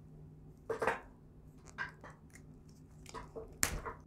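Wire stripper cutting and pulling back the outer sheath of a Cat6a cable: a few short scraping clicks, the loudest about a second in and another cluster near the end.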